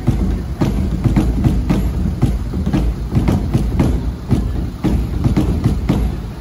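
Nagara kettle drums beaten by hand in a fast, steady welcome rhythm, about four to five deep strikes a second.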